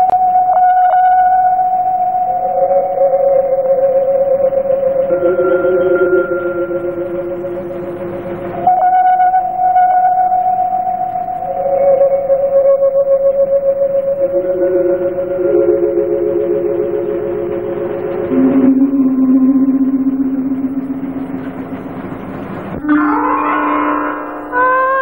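Instrumental prelude of a 1960 Tamil film song. A slow melody of long held notes with a wavering vibrato lasts several seconds each, two or three notes overlapping at a time. Near the end a quick upward glide leads into the next phrase.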